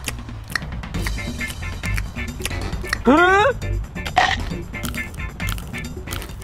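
Background music with a steady beat, under scattered sharp cracks and crunches of hard chocolate shell being bitten and chewed. About halfway through, a person gives a short rising 'mm?'.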